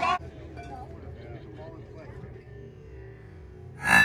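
Metal baseball bat striking the ball near the end: one sharp ping that keeps ringing afterwards, the hit that goes for a single.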